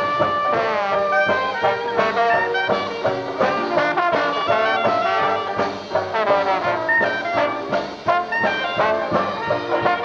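Traditional New Orleans-style jazz band playing live, with trumpet, clarinet and trombone together over drums and string bass.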